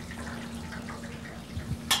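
Hot oil in a commercial deep fryer bubbling and dripping, over a steady low hum.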